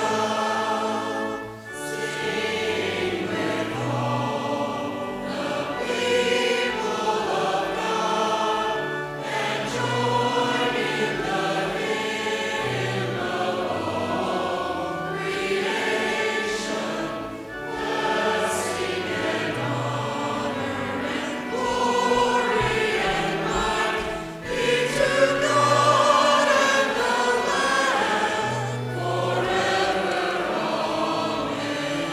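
Church congregation and choir singing a hymn with pipe organ accompaniment, in sustained phrases with short breaths between them.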